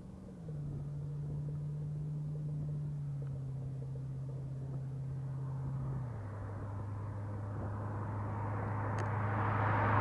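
A 1991 Corvette convertible's V8 running steadily at cruise, its engine note dropping a step about half a second in and again about six seconds in. Engine and tyre noise grow louder near the end as the car approaches.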